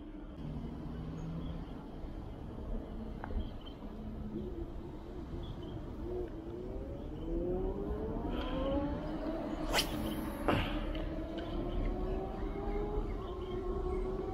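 An engine speeding up, its pitch rising gradually over several seconds in a few steps, with two sharp clicks about ten seconds in.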